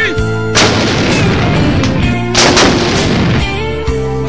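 Towed artillery howitzer firing: two loud blasts about two seconds apart, each trailing off over about a second.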